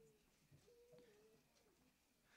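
Near silence: room tone, with a faint, brief steady hum near the middle.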